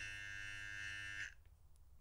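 Battery electric body trimmer switched on, giving a brief steady buzz that cuts off suddenly about a second and a quarter in.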